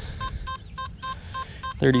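A Nokta Makro Simplex metal detector giving a quick run of short, same-pitched beeps, about four a second, as its coil sweeps over targets reading in the mid-30s. These are jumpy, inconsistent signals coming from all around, which the detectorist calls "bouncy signals all over here".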